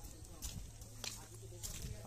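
Faint talk of people in the background, with a couple of light clicks about half a second in and near the end, over a steady low hum.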